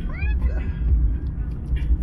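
Steady low road rumble inside a moving car's cabin, with a brief rising voice sound near the start.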